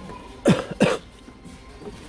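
Two loud coughs in quick succession about half a second in, over faint background music.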